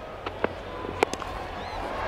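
A cricket bat strikes the ball once with a sharp crack about a second in, over stadium crowd noise that swells toward the end as the shot goes away.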